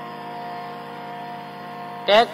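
Accompanying instrument holding a steady chord: several sustained tones that stay even, with no beat and no change.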